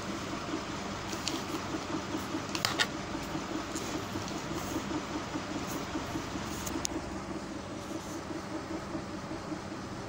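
Steady mechanical room hum with a regular low pulsing, and a few faint brief ticks.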